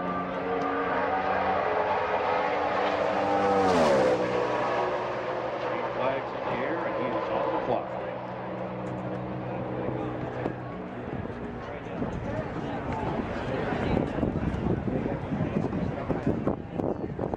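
A NASCAR Cup stock car's V8 at full throttle on a qualifying lap passes by. It builds to its loudest about four seconds in and drops in pitch as it goes past, then fades as it runs on around the track.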